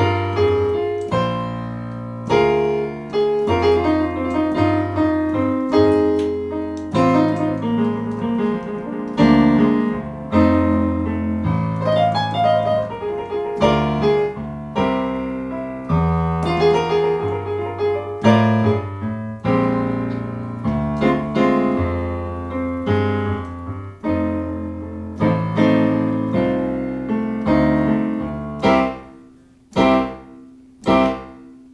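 Digital piano playing an instrumental blues: bass notes under repeated struck chords in a steady rhythm, thinning near the end into a few separate chords that ring out.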